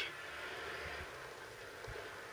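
Quiet, steady background hiss of room tone with no speech, and a soft low bump near the end.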